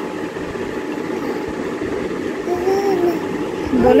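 A steady mechanical hum runs throughout, with a short hummed voice sound about two and a half seconds in.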